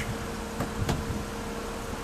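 Steady background noise with a faint, constant hum and one soft click a little under a second in; no distinct event stands out.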